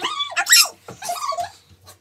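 High-pitched whining and squealing cries, several in quick succession, stopping suddenly near the end.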